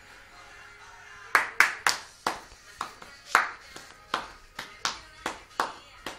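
Hands clapping close by in a steady rhythm, about two to three claps a second, starting a little over a second in, over faint music.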